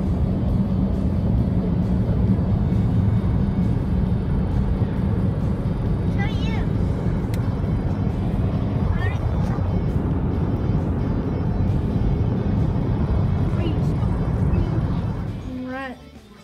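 Steady low road and engine noise inside the cabin of a GMC Terrain driving on a highway, which cuts off near the end.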